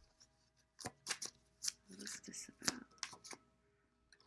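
A tarot deck being shuffled by hand: a quick run of papery card slaps and rustles, starting about a second in and stopping near the three-second mark.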